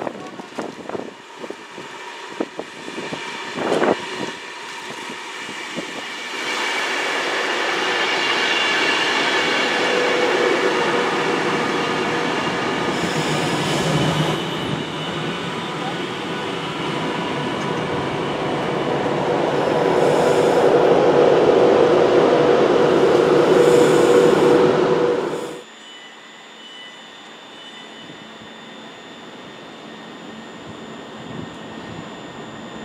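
An Avanti West Coast express train passing through a station at speed: a sustained rush of wheel and air noise with a steady hum, building to its loudest near the end and then cutting off abruptly. A few scattered knocks and clicks come before it.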